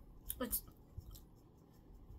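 A single short spoken word with a sharp hiss at its end, then quiet room tone with one faint soft knock about a second in.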